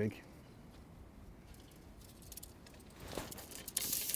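Carbon fishing pole top kit being picked up and handled, with a cluster of light clicks and rustles near the end after a couple of quiet seconds.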